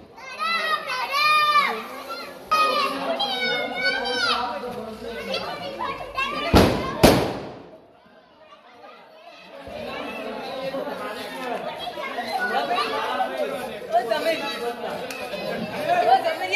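Children's excited high voices, then two sharp firecracker bangs about half a second apart just past the middle, followed by a brief lull and mixed chatter.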